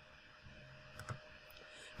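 Computer mouse clicking faintly, two quick clicks about a second in and a fainter one shortly after, in an otherwise near-silent room.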